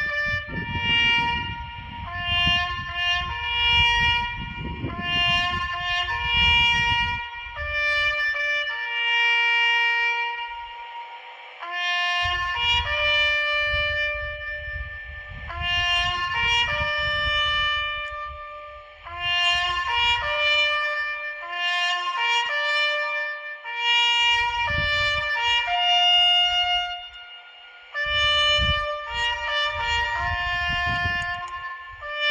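A solo trumpet playing a slow, solemn melody of long held notes in phrases, sounded for a minute of silence at a commemoration. Gusts of wind rumble on the microphone at times.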